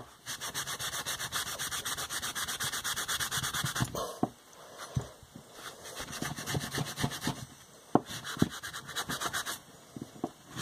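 A green scrubbing pad rubbed rapidly back and forth over a silicon bronze skull casting, buffing the bronze colour back through its dark liver-of-sulphur patina. The steady rubbing strokes lull about four seconds in and then resume, with a few light knocks of the casting against the bench.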